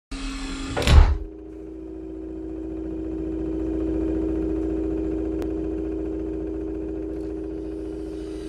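Sound effect for a hologram switching on: a short, loud burst with a deep boom about a second in, then a steady electronic hum that swells to its loudest midway and slowly eases off.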